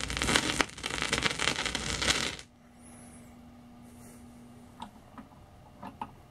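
Crackly surface noise of a 16-inch transcription disc, full of clicks and pops, with no music playing; it cuts off suddenly about two and a half seconds in. Then a faint steady hum follows, and a few small clicks come near the end as a hand works the turntable's switch.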